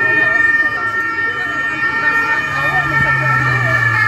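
Police vehicle siren sounding steadily and loudly, with people's voices underneath.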